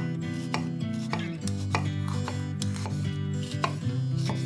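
Chef's knife chopping a tomato on a wooden cutting board: a string of sharp knocks, roughly two a second, as the blade cuts through and strikes the board. Background music plays steadily underneath.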